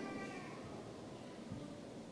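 A pause between spoken phrases: faint hall room tone, with a brief faint pitched sound fading out in the first half-second and a soft low knock about one and a half seconds in.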